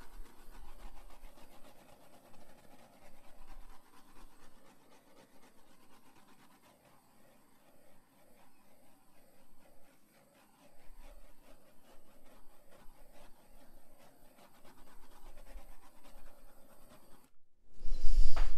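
Handheld butane torch flame hissing as it is swept over wet acrylic pour paint to pop surface air bubbles. The hiss comes and goes unevenly, dropping away briefly a few times.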